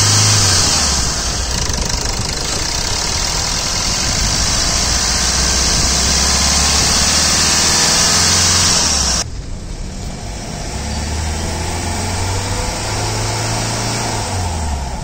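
Hyundai Verna 1.6 engine running at idle, its pitch rising and dropping a little a few times. A loud hiss over the engine note stops suddenly about nine seconds in.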